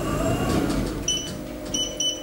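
Schindler 3300 machine-room-less lift car running with a low rumble as it travels and settles, then two short high electronic beeps about two-thirds of a second apart as it arrives at the floor.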